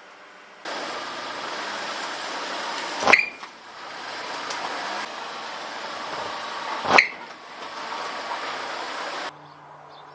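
A car rolling slowly over a PVC compression-coupling water filter on concrete, with steady vehicle and outdoor noise throughout. Two sharp cracks about four seconds apart come as the tyre presses on the hard plastic cylinder.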